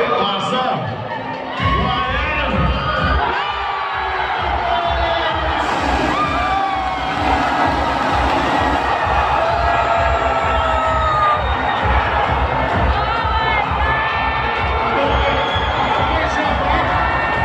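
Large crowd cheering and screaming. It erupts about two seconds in and stays loud, with shrill shouts rising above the roar: celebration of a game-winning basket.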